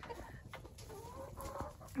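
Backyard hens clucking faintly, a few short calls that rise and fall in pitch, mostly in the second half.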